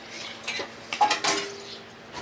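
Spoons and forks clinking and scraping on ceramic plates at a family meal, in scattered, irregular clicks.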